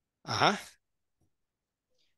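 A person's brief breathy sigh, about half a second long.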